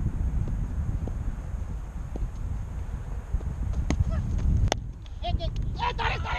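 Wind rumbling on the microphone, then a single sharp crack of a cricket bat striking the ball, followed by short shouted calls.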